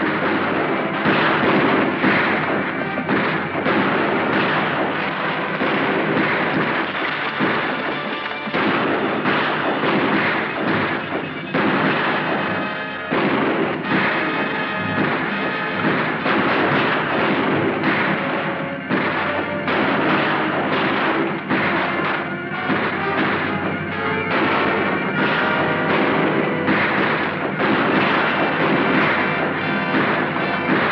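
Orchestral film score playing under a rapid volley of gunshots, sharp reports coming every second or less throughout a town shootout.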